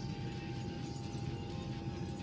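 Airliner cabin drone: a steady low rumble with a thin steady whine, with a few faint light ticks about halfway through and near the end.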